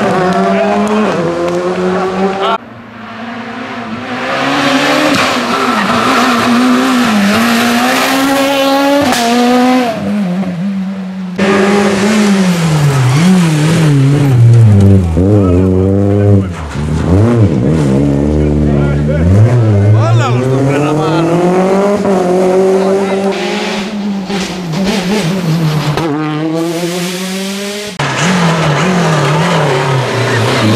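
Rally car engines revving hard past the camera, the pitch climbing and dropping with each gear change and lift, in a series of short cut-together passes.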